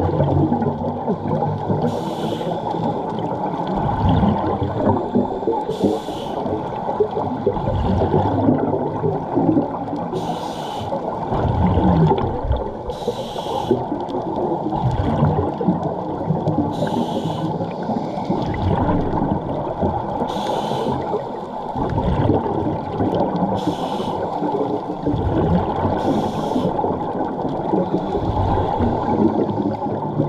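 Scuba diver breathing through a regulator underwater: a short hiss on each inhale about every three to four seconds, alternating with the rumbling gurgle of exhaled bubbles, over a steady underwater rush.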